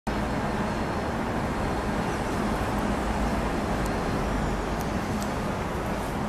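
Steady road traffic noise, an even low hum and hiss, with a few faint short high ticks in the second half.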